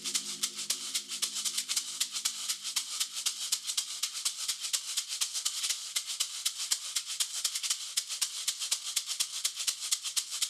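Shaker rattling a quick, even rhythm over a faint low drone, with a few held notes fading out in the first half-second.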